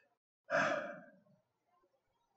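A man sighing once: a single breathy exhale about half a second in, strongest at its start and fading away within about half a second.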